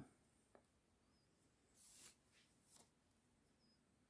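Near silence, with a few faint soft rustles as yarn is drawn through crochet fabric while whip stitches are sewn with a yarn needle.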